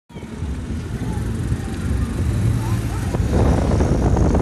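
Motor scooter engine running as the scooter rides along a city street, a steady low rumble with road and wind rush that grows louder from about three seconds in as it gathers speed.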